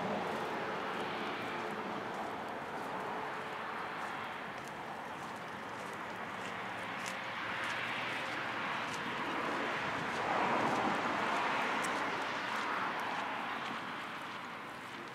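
Distant engine noise, a steady rush that swells to its loudest about ten to twelve seconds in and then fades, with a few faint sharp ticks over it.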